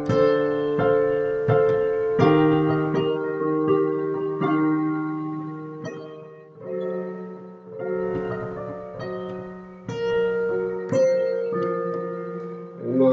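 Digital piano playing slow chords with a melody on top, each chord struck and left to ring before the next, roughly one a second, with a short lull about six seconds in. This is the song's chorus played an octave higher as an ending.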